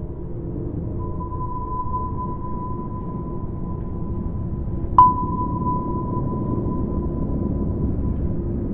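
Submarine sonar sound effect over a low underwater rumble: a steady high tone comes in about a second in, then a sharp sonar ping strikes about five seconds in and its tone rings on.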